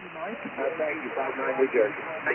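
Single-sideband voice received over HF amateur radio on the 15 m band: a weaker station talking through a steady hiss of band noise. The audio is narrow and telephone-like, with nothing above the treble.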